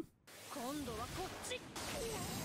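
Faint speech from the anime episode playing in the background, a higher-pitched voice than the reactor's, in a few short wavering phrases over a low hiss.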